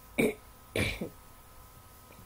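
A person clearing her throat: a short burst just after the start, then a longer one about three quarters of a second in that ends in a second brief pulse.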